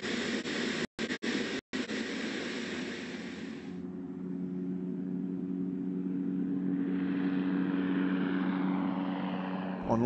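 NASA's Ikhana drone, a Predator B with a turboprop engine driving a pusher propeller, taking off and climbing away. It opens with loud, rushing engine noise broken by three brief dropouts, then about four seconds in gives way to a steadier propeller drone with a low hum that builds slightly.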